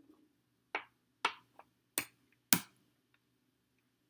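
Checkers pieces clicking down on the board as a double jump is played and the captured pieces are taken off: four sharp clicks about half a second apart, with a faint fifth among them.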